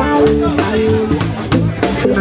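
A live soul-funk band of electric guitar, electric bass and drum kit plays a groove between sung lines, with held notes over a bass line and regular drum hits.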